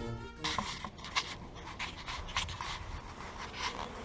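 Background music ending about half a second in, then soft irregular rustles and taps of a camera being picked up and handled.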